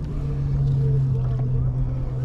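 A motorboat engine drones steadily at one low pitch, over a low rumble.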